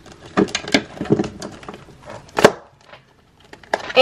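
Scattered clicks and knocks of a cash budget binder and its plastic pouches being picked up and handled on a tabletop, with one sharper knock about two and a half seconds in.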